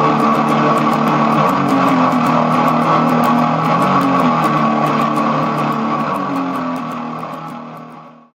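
Electric guitar played through a recently repaired late-1980s Peavey Century amplifier head: a continuous run of notes with a strong midrange emphasis. The sound fades out over the last two seconds.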